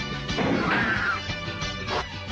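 Dramatic fight-scene soundtrack music with a crashing impact sound effect about half a second in.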